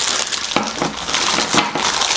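Packaging wrap crinkling and rustling as it is handled and unwrapped, a continuous crackle, with loose batteries inside.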